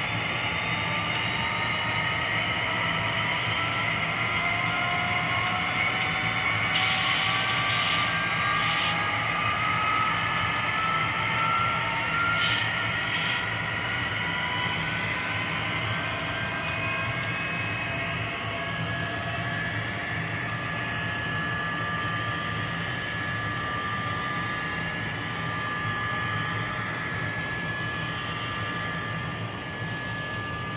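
HO-scale model train running on the layout: its whine climbs slowly in pitch for the first ten seconds or so as it picks up speed, then holds steady over a low hum. Two short hissing bursts come at about seven and twelve seconds in.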